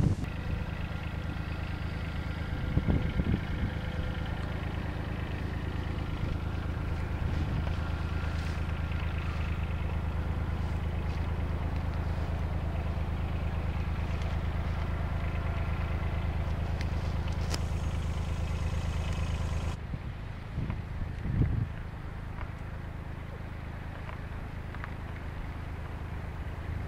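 A small digger's engine running at a steady speed, with a few faint knocks. About three-quarters of the way through, the sound drops and becomes duller.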